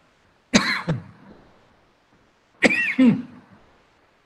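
A person coughing twice: two short, sharp coughs, one about half a second in and one a little under three seconds in.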